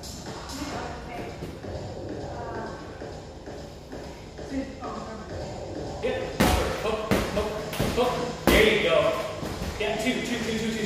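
Strikes thudding against a free-standing punching bag: a run of sharp hits in the second half, the two loudest about two seconds apart.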